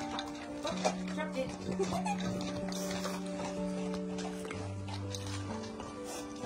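Background music with long held notes, over French bulldogs eating from stainless steel bowls: chewing and licking with short clicks of the bowls.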